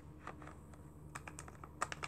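Light plastic clicks and taps as a 1970s Star Wars action figure is handled and set into a compartment of a hard plastic carrying case, with a couple of sharper clicks near the end.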